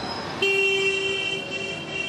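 Vehicle horn sounding about half a second in, held as one steady tone for around a second and a half, over background street noise.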